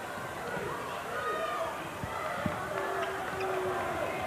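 Live basketball game sound in an arena: crowd noise with a ball bouncing on the hardwood court, two sharp knocks about two and two and a half seconds in.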